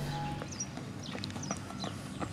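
Outdoor ambience with several short, high chirps of small birds and a few faint knocks.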